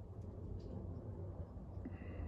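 Quiet room noise with a few faint ticks as a helicoil insertion tool is turned by hand, screwing a coil thread insert into an aluminium bolt hole.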